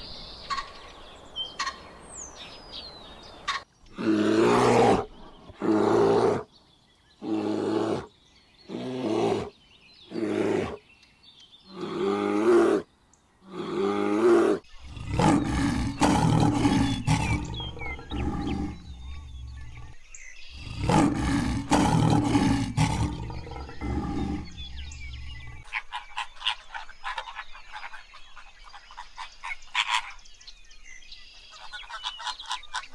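A lion roaring: a run of about seven loud roars, each about a second long, then a longer, unbroken stretch of roaring for around ten seconds. Near the end it gives way to a flock of birds chattering.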